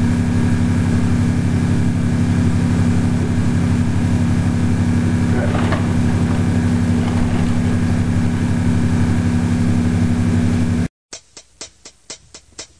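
Loud, steady electrical mains hum and buzz in the recording, with a brief faint voice-like sound about halfway through. The hum cuts off suddenly near the end and is followed by a quick run of sharp clicks.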